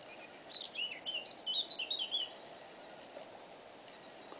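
A small songbird singing one short phrase of quick, high, rising-and-falling notes that lasts about two seconds, over a faint steady outdoor background hiss.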